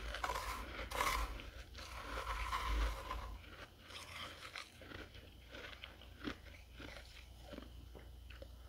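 Dry, flaky freezer frost crunching as it is bitten and chewed, close to the microphone. The crunching is densest and loudest over the first three seconds, then thins to softer, scattered crackles.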